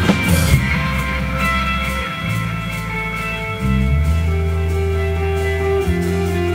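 Live rock band playing an instrumental passage led by electric guitar, with no vocals. Long held notes ring over a low line that shifts about two seconds in and again near four seconds.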